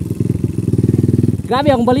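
Kawasaki KLX150L dirt bike's single-cylinder four-stroke engine idling with an even, rapid pulse, with a person talking over it near the end.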